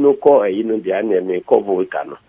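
Only speech: a man talking steadily into a bank of microphones.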